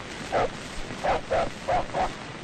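A dog barking offscreen, about five short barks in quick succession.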